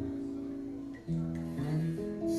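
Acoustic guitar strummed, its chords ringing steadily, changing to a new chord about a second in.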